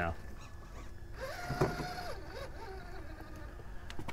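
Electric motor and drivetrain of an Axial SCX-6 Honcho RC rock crawler whining under throttle. About a second in it rises to a steady pitch, holds for about a second, then falls away, with a single knock of the truck on rock midway and a weaker wavering whine after.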